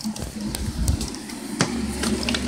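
A plastic toy dinosaur being picked up and moved by hand, with rumbling handling noise and a few light taps and knocks. A low steady hum comes in near the end.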